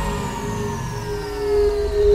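Electronic dance music at a transition: the bass drops out and several synth tones glide slowly downward, with a single held note coming in near the end.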